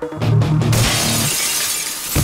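Glass shattering over loud action music: less than a second in, a crash of breaking glass starts and runs on as a long spray of falling shards.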